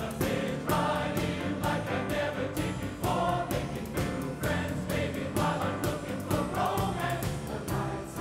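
Mixed chorus singing with band accompaniment, over a steady beat of about two strokes a second.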